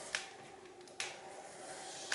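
Faint scratching of a fat crayon on paper, with two light ticks about a second apart.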